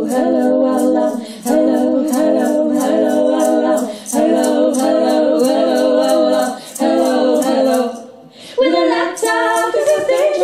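Three women's voices singing a cappella in close harmony, in phrases with short breaks and a longer pause near the end, over a steady rhythm of light high ticks.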